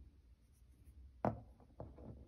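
Small plastic glue tube handled and set down on a cardboard sheet: faint rubbing with one soft tap a little over a second in and a lighter one just after.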